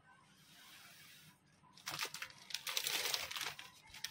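Clear plastic bag crinkling as hands handle it and pull the instrument out. It begins about two seconds in as a rapid, dense crackle, with only a faint rustle before.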